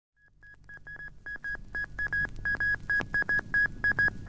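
Morse-code telegraph beeps opening an early-1960s Italian orchestral pop record: one high tone keyed in quick short and long pulses, growing louder, over a faint low hum.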